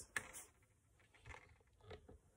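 Near silence, broken by a few soft, brief rustles: one just after the start and two fainter ones later.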